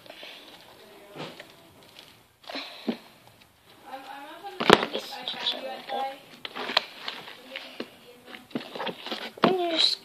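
Slime being squished and kneaded by hand, with wet clicks and pops, the sharpest a little under halfway through. A child's voice murmurs in between.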